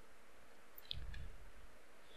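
A faint, sharp click about a second in, then a couple of fainter ticks: clicks from operating a computer as a selected block of code is cut in the editor.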